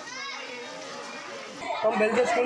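Many children's voices talking and calling out at once, as from a room full of schoolchildren, getting louder near the end.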